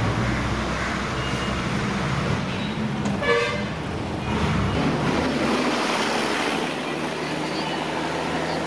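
Street traffic noise, with a motor running low and steady underneath. A vehicle horn gives one short toot a little over three seconds in.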